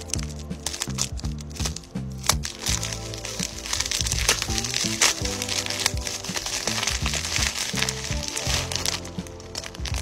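Thin plastic mailer bag crinkling and rustling as it is cut open with scissors and a plastic-wrapped plush toy is pulled out, strongest in the middle of the stretch. Background music with a steady bass beat plays throughout.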